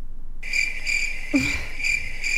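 Cricket chirping, a high chirp pulsing about twice a second that starts suddenly about half a second in, with a short laugh over it. The abrupt start in a studio setting marks it as a played sound effect.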